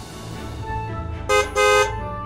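Background music, with two short, loud horn toots in quick succession about a second and a half in, like a 'beep-beep' honk.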